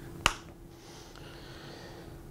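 A single sharp click about a quarter second in from a switch on a handheld wireless fire-trainer remote pendant being worked, followed by a faint steady room hum.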